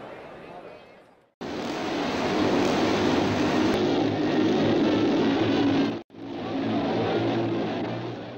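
JAP single-cylinder speedway motorcycle engine running hard, starting abruptly about a second and a half in; the sound breaks off for an instant near the end and carries straight on.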